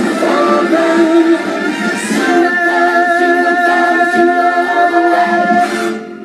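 A group of voices singing with music, holding long sustained notes; the final note dies away near the end.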